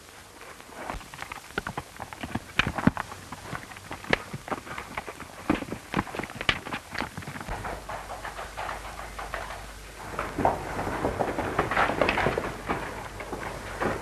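Horses' hooves clopping: irregular sharp strikes in the first half, then a denser run of hoofbeats as a horse comes in and pulls up, over the hiss of an old film soundtrack. A low hum joins the hiss about halfway through.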